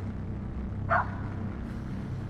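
A dog barking once, a single short bark about a second in, over a steady low rumble in the outdoor phone recording.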